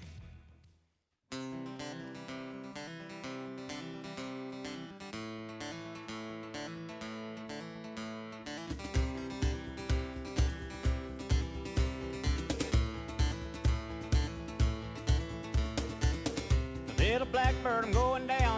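Country song intro on acoustic guitar. It starts after about a second of silence with picked notes, and a steady beat of about two thumps a second joins about halfway through.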